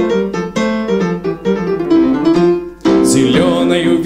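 Grand piano played live, a piano introduction of struck chords and notes, with a man's singing voice coming in near the end.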